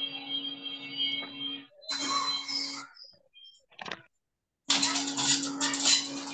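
Background room noise with a steady hum, carried over an open microphone on a video call. It cuts in and out in stretches of a second or two, as if gated, with a short click near the middle.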